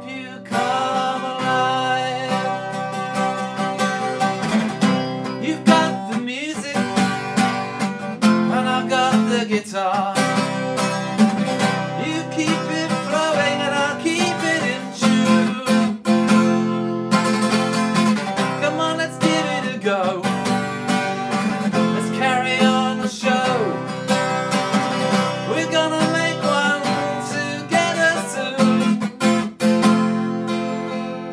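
Acoustic guitar strummed and picked as a song accompaniment, with a man's voice singing over it.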